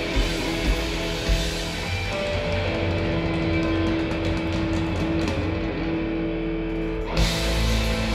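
Southern rock band playing live with several guitars, bass and drums. About two seconds in, the cymbals and drums drop back and a long held guitar note with a few bends stands out. The full band comes crashing back in about seven seconds in.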